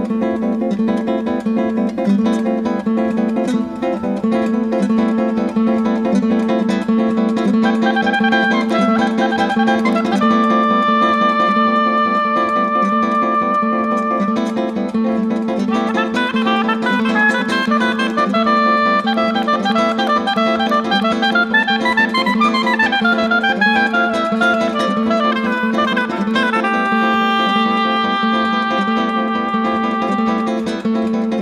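Acoustic guitar playing a steady, repeated strummed figure on one chord, joined about eight seconds in by a melody line of long held notes, which later moves in quick rising and falling runs.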